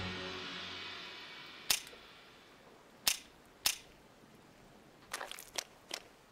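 Animated-film soundtrack: a music cue fades away, then a joke gun that shoots out a "CLICK" flag instead of a bullet gives three sharp clicks, about a second and a half apart and then half a second apart, followed near the end by a short flurry of small knocks and rustles.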